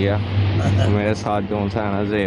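A person's voice talking, over a steady low hum.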